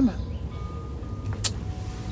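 One spoken word, then a low steady rumble with faint held tones above it, and a single sharp click about one and a half seconds in.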